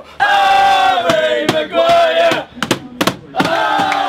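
A group of football fans chanting together at full voice, holding one long note and then breaking into shorter shouted notes, over sharp rhythmic hits such as claps or bangs on the carriage.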